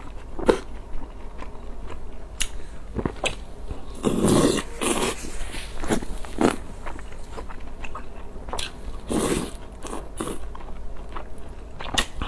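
Close-miked eating sounds: a person biting and chewing spicy noodles and fried dumpling pieces, with irregular wet mouth sounds and two longer, louder bursts about four seconds in and near nine seconds.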